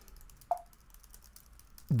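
Typing on a laptop keyboard: a quick run of light key clicks, with one louder tap about half a second in.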